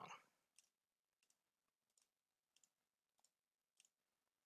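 Faint computer mouse clicks over near silence, about six over the four seconds, some in quick pairs, as output settings are picked from drop-down menus.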